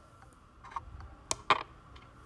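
Chess piece being picked up and set down on the board: a couple of faint knocks, then two sharp clicks about a quarter second apart, a little past halfway.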